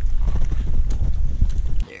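Wind buffeting an outdoor microphone as a loud low rumble, with light irregular taps over it. It cuts off suddenly near the end.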